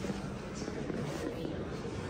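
Faint background voices over the steady hum of a large indoor hall.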